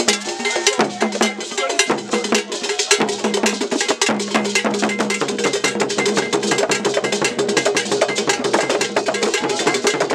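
Traditional Akan drumming: a struck iron bell keeps a fast, repeated pattern over hand drums, with many strokes a second throughout.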